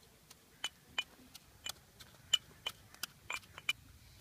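Pestle pounding mahogany seeds in a small mortar: a quick, irregular run of sharp knocks, about three a second, each with a slight ring.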